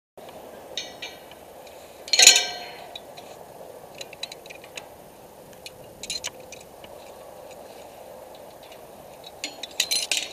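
Metal clinking of a tower climber's hooks and hardware against a steel lattice tower as he climbs, with one loud ringing clank about two seconds in and scattered lighter clicks after it.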